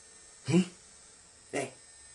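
A man's voice giving two short vocal sounds: a sharp, loud exclamation about half a second in, then a brief questioning "Hein?" about a second later.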